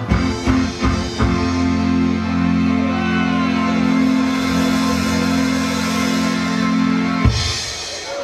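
Live reggae band with drums and guitars ending a song: a few drum hits, then a held final chord that cuts off suddenly near the end, and the crowd starts applauding and cheering.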